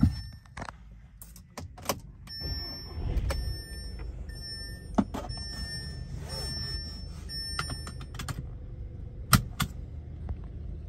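Ignition key clicking in a 2015 Audi A3's lock, then dashboard warning chimes sounding repeatedly for several seconds. The 2.0-litre turbocharged four-cylinder starts about three seconds in and settles into a low, steady idle, with a few more sharp clicks over it.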